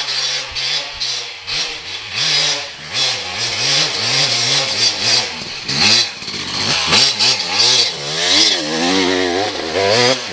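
Off-road dirt bike engines revving, the pitch rising and falling again and again as a bike rides down a forest dirt trail. The engine sound is loudest from about six to nine seconds in, as the bike comes close.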